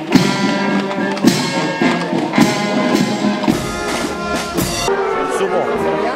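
A brass band playing a march with drums. About five seconds in it cuts off suddenly to the chatter of a crowd and a man's voice.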